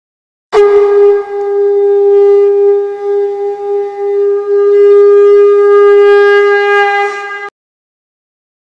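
A conch shell (shankha) blown in one long, steady note of about seven seconds, starting about half a second in and cutting off sharply.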